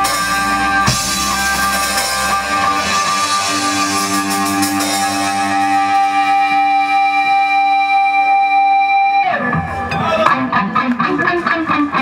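Live rock band with electric guitars, bass and drum kit holding long sustained notes. The held notes cut off about nine seconds in, and a rougher, choppier sound follows.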